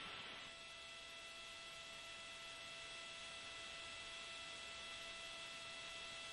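Faint steady hiss of the broadcast audio line with several thin, unchanging hum tones.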